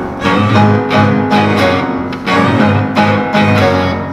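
Chamber ensemble of bowed strings, guitar and piano playing a driving, repetitive pattern of low notes in a quick pulse.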